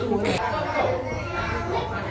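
Several young children talking and calling out over one another, mixed with adult voices.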